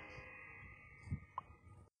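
Faint steady room hum with a soft low thump about a second in and a brief click just after, then the sound cuts off abruptly as the recording ends.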